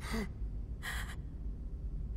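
A person gasping for breath: a brief voiced catch right at the start, then one sharp, noisy breath about a second in.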